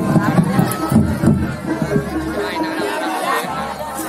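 Live gamelan music accompanying a Reog dance, held pitched tones over percussion, mixed with crowd chatter.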